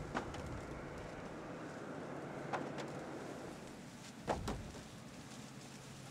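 Hand-husked ears of corn thrown into a wooden wagon box, each landing with a sharp knock, four in all at roughly two-second intervals, over a steady rustle of dry cornstalks and husks.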